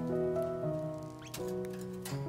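Background music of held notes, over which a Java sparrow's beak makes a few quick clicks about one and a half seconds in as it pecks millet seeds from a hand.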